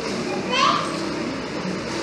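Children's voices and chatter in the background, with one high rising call about half a second in.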